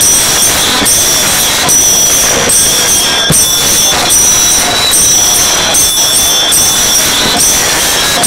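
Several pairs of small brass hand cymbals (taal) clashed together in a steady devotional rhythm, a little over one beat a second. Their bright metallic ringing carries on almost without a break between strokes.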